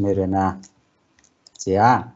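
A man speaking Mongolian in two short bursts, with a pause between them in which a few faint clicks are heard.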